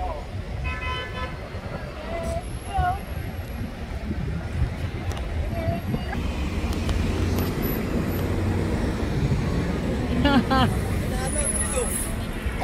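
Road traffic: a short vehicle horn toot about a second in, over a steady engine rumble that grows louder in the second half as a bus comes close, with people's voices near the end.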